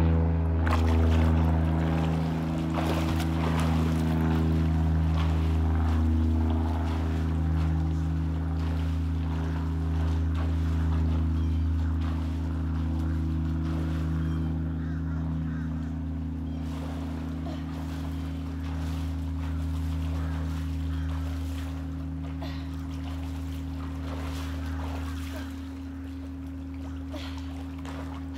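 A steady low mechanical hum, with water lapping and splashing close by.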